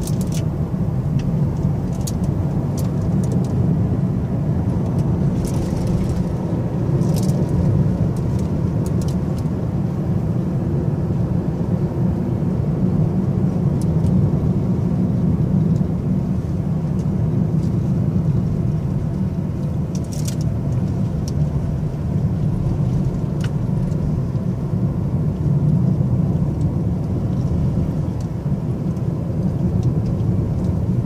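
Steady low drone of a car heard from inside the cabin while driving on a paved road, engine and tyre noise together, with a few faint clicks now and then.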